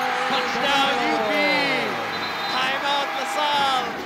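Arena crowd cheering and shouting as a basket is made, many voices overlapping, with sneakers squeaking on the hardwood court.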